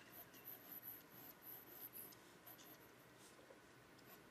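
Faint scratching of a mechanical pencil on paper in short strokes, about two a second, thinning out after about three seconds.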